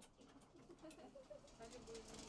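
Near silence: faint background ambience with a few soft, short pitched sounds and clicks.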